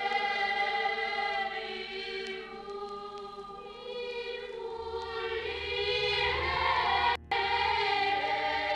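A group of voices singing a slow religious hymn together, holding long notes. A low hum comes in about halfway, and the sound drops out for an instant near the end.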